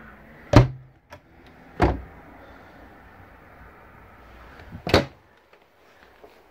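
Wooden cabinet doors in a travel trailer being opened and shut, with a sharp knock about half a second in and another about five seconds in, and a smaller one near two seconds.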